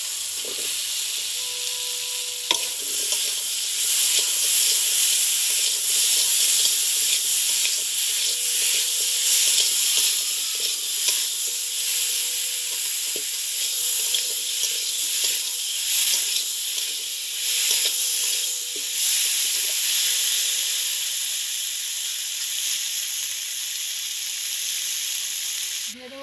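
Potato wedges frying in hot oil in a large kadai: a loud, steady sizzle, with a metal spatula scraping and knocking against the pan as they are stirred.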